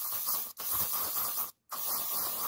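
Aerosol spray can hissing in bursts of about a second each, with brief breaks between, as a glossy finish is sprayed onto black leather sandals.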